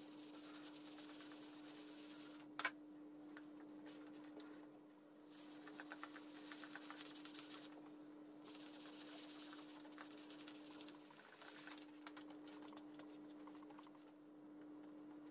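Bristle brush scrubbing cleaning cream over a leather bag flap, in soft scratchy spells, with one sharp click a little under three seconds in. A steady low hum runs underneath.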